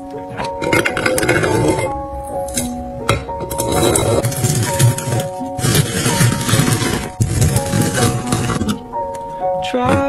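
Pomegranate arils being crushed with a stainless steel muddler in a plastic cup, giving a wet, irregular crunching and clinking as the juice is pressed out. This runs from about a second in until near the end, over background pop music.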